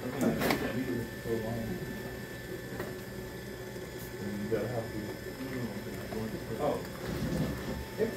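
Electric potter's wheel running with a steady whine and hum while wet clay is coned up and pressed down under slick hands.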